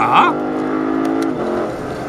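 Lexus LC500's 5.0-litre V8 heard from inside the cabin under hard acceleration in third gear, holding a steady note, then dropping away about one and a half seconds in as the 10-speed automatic shifts up to fourth.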